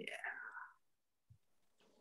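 A man's quiet, breathy voice trailing off in the first second, then near silence.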